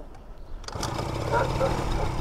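Small scooter engine kick-started, catching about three-quarters of a second in and then running. It starts but will not hold idle and stalls when the throttle is let go, which the riders put down to bad or dirty fuel.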